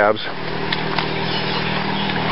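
Steady low motor-vehicle engine hum under an even hiss of outdoor background noise, with a couple of faint ticks.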